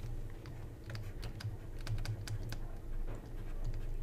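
Light, irregular clicks and taps of a stylus writing on a pen tablet, over a faint low hum.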